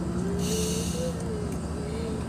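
Bus engine running, with a steady low rumble inside the cabin. A person hums a wavering note over it, and a short hiss comes about half a second in.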